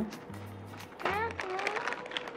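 A young child's voice sings a high note that slides down and then holds steady from about a second in, with faint rustling of paper packaging underneath.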